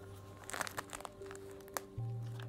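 Pages of an early-1900s paper notebook being turned by hand: a few short, faint rustles and crinkles of paper, over soft background music with steady held notes.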